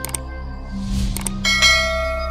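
Subscribe-button animation sound effects: sharp mouse clicks, a swoosh, then a bright bell chime about one and a half seconds in that rings on, over background music.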